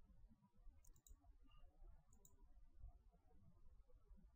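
Near silence: room tone with a few faint computer mouse clicks, a pair about a second in and another just past two seconds.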